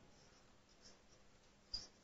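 Faint squeaks of a marker pen writing figures on a whiteboard: a few short strokes, the loudest one near the end.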